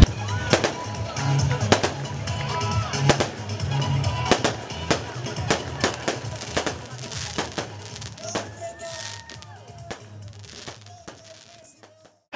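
Repeated sharp bangs at irregular intervals, several a second, over quieter background music with a low bass line. Faint voices can be heard, and everything fades out toward the end.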